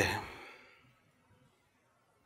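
A man's voice finishing a spoken word and fading out within the first second, then near silence: room tone.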